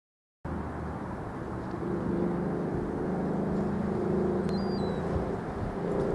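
Outdoor ambience: a steady low drone with a hum in it over a wash of noise, starting about half a second in, with one short high chirp near the end.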